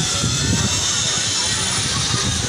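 Wind buffeting the microphone: an uneven low rumble over a steady rushing hiss.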